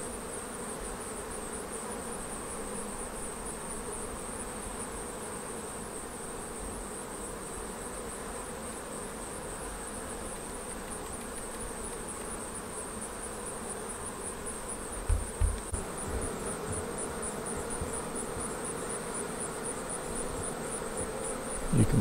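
Honey bees humming steadily in the hive as they work the Flow frames, with a few brief low bumps about fifteen seconds in.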